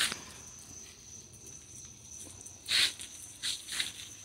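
A quiet lull filled by a steady, high-pitched insect trill, with three short soft hisses near the end.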